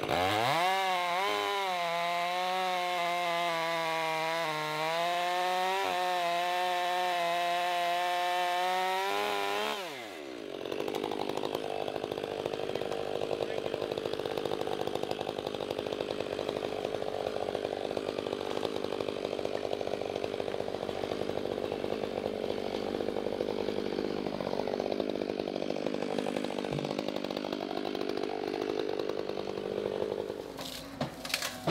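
Gas chainsaw revving up and cutting through a walnut trunk at full throttle, its pitch wavering under load for about ten seconds. The throttle is then let off and the pitch falls sharply, leaving a lower, steady engine sound as the saw idles alongside the John Deere 325G tracked skid loader's running diesel.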